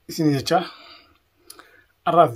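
A man's voice speaking briefly, with a sharp click about half a second in and a fainter click about a second and a half in.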